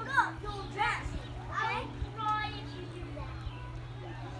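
Young children's high-pitched voices calling out at play, about four short calls in the first half, over a steady low hum.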